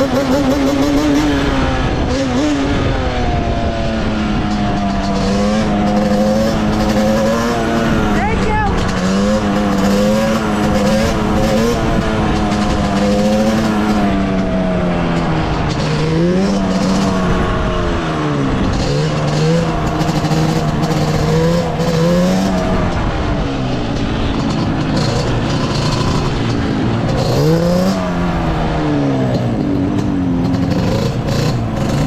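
Yamaha Banshee 350's twin-cylinder two-stroke engine running at a steady cruise, its pitch wavering, with revs dropping briefly and climbing back up a few times, in the middle and again near the end.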